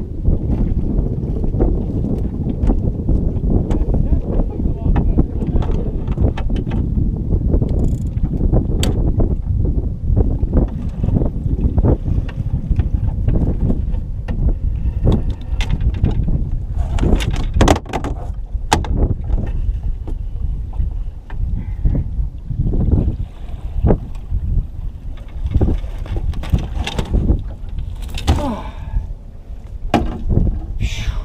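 Wind rumbling on the microphone, broken from about a third of the way in by scattered knocks and bumps as a landing net and its handle are worked against the side of a small fishing boat. A short voice-like sound comes near the end.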